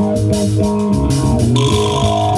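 Live rock band playing: a repeating electric bass riff under electric guitar, with a drum kit keeping a steady cymbal beat.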